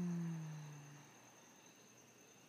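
A woman's long voiced exhale, a low hum or sigh that falls slightly in pitch and fades out over about a second, as the out-breath of deep belly breathing. Steady high insect chirring goes on behind it.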